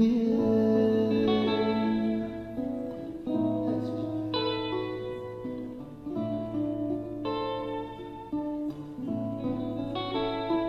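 Acoustic guitar and electric guitar playing together in an instrumental passage, with held chords changing every second or two.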